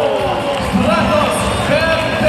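Arena public-address announcer calling out a player's name in a drawn-out voice that falls in pitch and tails off, followed by further calls, over the noise of a large crowd in a big hall.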